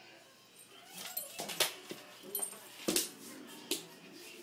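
Two dogs play-wrestling on a wooden floor: one whines while they scuffle, and three sharp knocks come in the second half.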